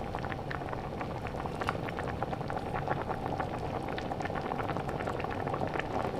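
Mutton yakhni (stock) with soaked basmati rice boiling in a large pot: steady bubbling with frequent small pops, the rice cooking in the stock.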